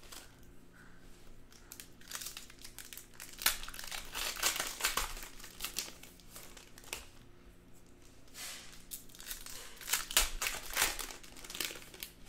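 Foil trading-card pack wrappers crinkling and tearing open as the cards are pulled out and handled, in irregular spells of crackling that are busiest in the middle and again near the end.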